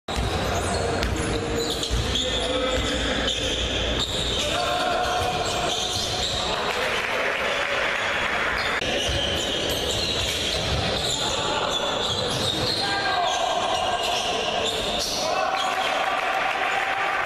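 Live basketball game sound in a large gym: the ball bouncing on the hardwood court, with voices in the hall.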